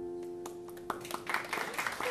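The last strummed chord of an acoustic guitar ringing out and fading, the song's ending. About halfway through, an audience starts clapping.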